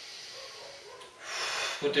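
A man breathing audibly: a soft rush of air about a second in, taken during a slow breathing exercise.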